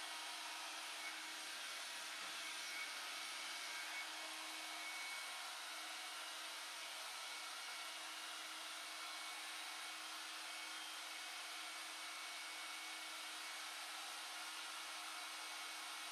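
John Frieda Volume Hair Blower running steadily on hair, a constant rush of air with a low hum under it.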